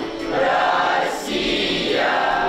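A mixed group of boys' and girls' voices singing a song together in chorus.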